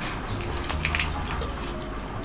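Soft wet chewing and mouth sounds of someone eating, with a few faint clicks about a second in, over a low steady hum.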